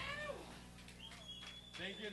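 Faint voices of people in the room, with short calls sliding in pitch, once at the start and again near the end. A thin, steady high tone rings for about a second in the middle.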